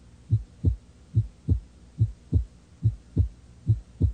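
Human heartbeat: steady lub-dub double thumps, low and muffled, about five beats at a little over one per second.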